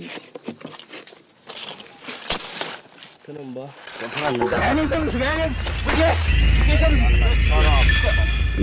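Light scattered scraping and rustling, then men's voices calling out from about three seconds in, over a low steady music drone that comes in about halfway and grows louder toward the end.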